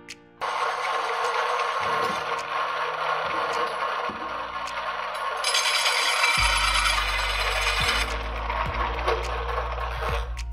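Hole saw in a drill press cutting into a steel sheet: a steady metallic grinding that starts abruptly about half a second in, turning harsher and higher-pitched for a few seconds past the middle. Background music plays underneath.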